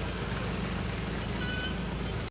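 A vehicle engine idling steadily, a low, even hum under street background noise, with a faint brief high tone about one and a half seconds in.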